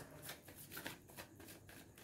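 A deck of tarot cards being shuffled by hand, overhand style, the cards sliding against each other in a faint, quick rustle.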